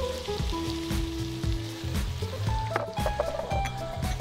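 Vegetables sizzling in a stainless-steel saucepan as shelled broad beans are dropped in by hand, with a few small clicks of beans and pan.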